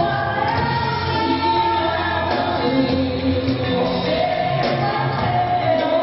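Live band playing a song, a woman singing lead into a microphone over electric guitars, bass, drums and keyboards, with long held sung notes.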